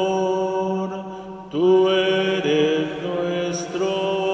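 Sung responsorial psalm: long, slowly changing held notes with sustained accompaniment chords. The sound dips briefly about a second in, then comes back louder at a new pitch.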